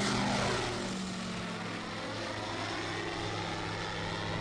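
Propeller-driven drone's engine running with a steady buzz, its pitch sinking a little over the first two seconds and then holding.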